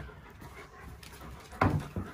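German Shepherd dogs panting and moving about up close, with one short vocal sound about a second and a half in.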